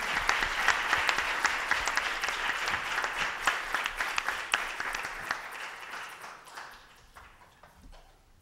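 Audience applause: many people clapping together. The clapping thins out and dies away over the last few seconds.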